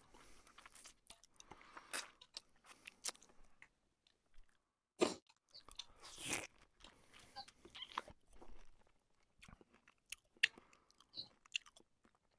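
A person chewing food close to the microphone, with irregular mouth clicks and crunches; the loudest come about five and six seconds in.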